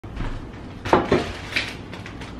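Kitchen handling noises as a bag is lifted: a few short knocks and clinks about a second in, over a soft rustle.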